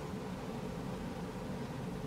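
Quiet steady background hiss of room tone, with no distinct event.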